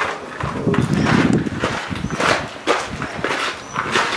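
Footsteps on rocky, gravelly ground, an irregular string of steps about two a second.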